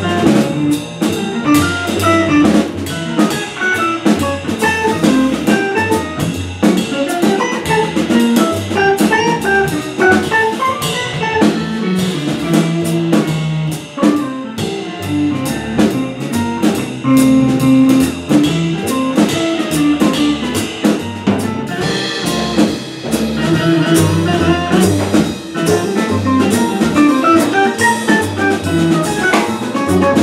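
Live small-group jazz: saxophone playing a line over hollow-body electric guitar, upright double bass and a busy drum kit.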